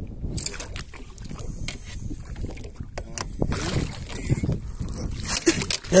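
Wind on the microphone and water moving against a small boat, with clicks from handling. At the very end a loud splash as a large hooked fish thrashes at the surface beside the landing net.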